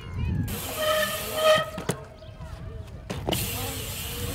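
Mountain bike tyres rolling and rushing over concrete skatepark transitions. There is a sharp knock about two seconds in and another just after three seconds, as the bike lands or hits the lip.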